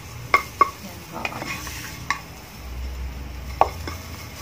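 Spatula stirring a blended garlic, coriander-root and pepper paste in oil in a nonstick wok, knocking and scraping against the pan about five times, over a light sizzle of frying.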